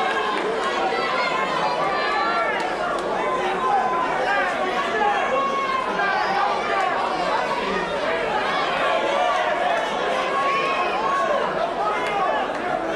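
Boxing crowd chatter and shouting: many voices overlapping at a steady level.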